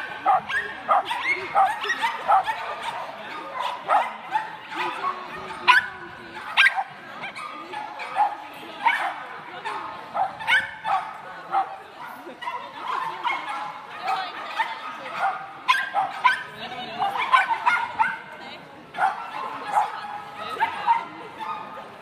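A dog barking and yipping over and over, short sharp barks about one or two a second.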